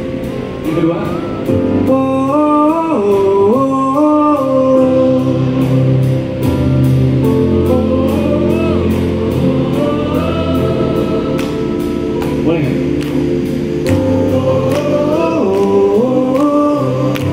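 Live band playing a song: a male lead voice sings a melody over keyboards, bass and drums, with the drums keeping a steady beat of about three strokes a second.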